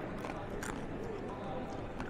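Crispy tarhana chips being chewed: a handful of faint, brief crunches over a steady background murmur.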